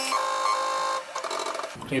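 The Z-axis drive motor of a Tormach PCNC 1100 CNC mill whines steadily as the spindle head is jogged down toward the workpiece. It stops about a second in and a few faint ticks follow.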